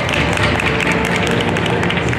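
Music playing over the crowd noise of a gymnastics hall, with a scatter of short, sharp taps.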